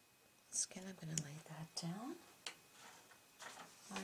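A woman talking quietly in short phrases, with a brief pause before she speaks again near the end.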